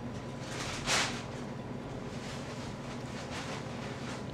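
A person chewing a bite of iced twist pastry with the mouth closed: soft mouth sounds over a steady low room hum, with one short breathy hiss about a second in.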